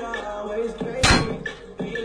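Hip-hop music with a steady beat, cut about a second in by one loud sharp thud: an impact sound effect edited in to fake the car door hitting a dancer.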